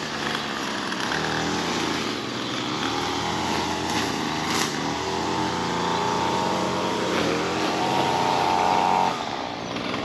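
Small gasoline engine of lawn-care power equipment running steadily, with a higher whine that grows a little stronger towards the end.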